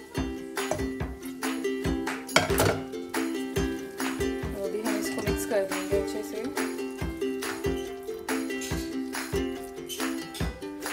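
Background music with a steady beat and plucked strings. One sharp clink, the loudest moment, comes about two and a half seconds in.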